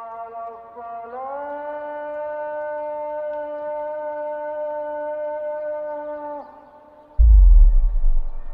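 Documentary soundtrack music: a single long wind-instrument note that rises slightly in pitch about a second in, is held, and fades out after about six seconds. A deep, loud low boom hits about seven seconds in.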